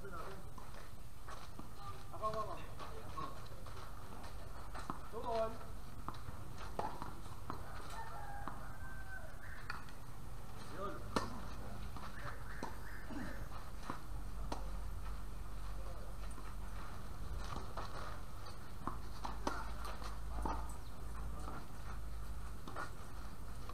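Distant voices over a steady outdoor background hiss, with a single sharp knock about eleven seconds in and a low rumble in the second half.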